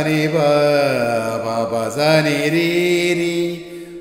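A man's voice singing a slow melodic phrase in long held notes that glide from pitch to pitch, fading out near the end.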